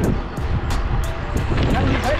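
Wind rumbling on the microphone of a camera riding along on a moving bicycle, with background music playing over it.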